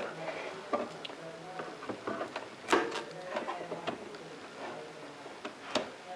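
Plastic clicks and light knocks of CISS ink cartridges and their tubing being handled and set into an Epson inkjet printer's print-head carriage, with a few sharp clicks, the loudest a little under three seconds in.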